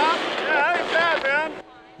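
Snowboard sliding over groomed snow, a steady scraping hiss that stops abruptly about one and a half seconds in.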